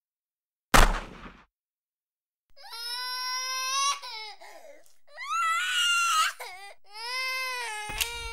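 A sudden loud thud about a second in, then three long, high-pitched crying wails, each wavering and bending in pitch.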